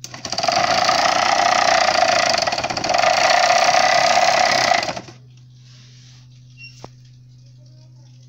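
Small 12-volt DC motor spinning a kite-string spool at high speed, very fast, with a loud steady buzz that dips briefly midway and stops about five seconds in. A single sharp click follows near the end.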